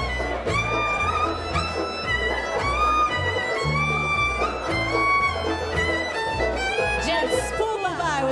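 Live old-time string band playing a contra dance tune: fiddle carrying the melody over a steady walking line of upright bass notes, about two a second, and strummed strings.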